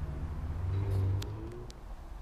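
Low, steady background rumble with two faint clicks around the middle.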